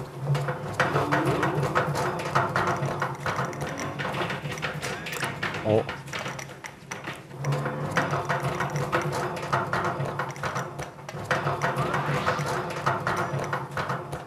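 Voices talking and laughing over the irregular clicking and knocking of a hand-turned metal mixer working olive paste in a steel drum.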